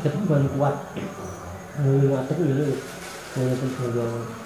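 A man's voice in several short utterances, low-pitched and broken by pauses.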